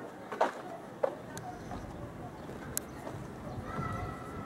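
Footsteps on a ship's deck: two sharp knocks in the first second, with faint voices of other people in the background.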